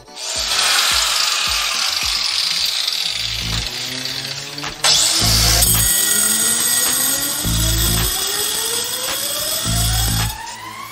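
Angle grinder cutting through a metal seatbelt bracket: a steady, high grinding hiss that starts just after the beginning and gets louder and harsher about five seconds in.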